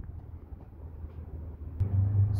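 Low outdoor background rumble of wind on a phone microphone and lot noise, with a short click near the end followed by a steady low hum.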